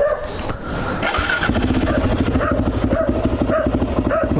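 Suzuki LT-Z400 quad's single-cylinder four-stroke engine idling with a steady, rapid pulse, which settles into an even beat about a second and a half in.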